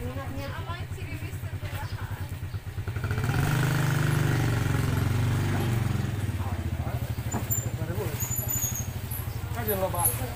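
A small motorcycle engine idling with a fast, steady low putter. From about three seconds in, an engine grows louder for a few seconds, its pitch rising and falling, then eases back to the idle.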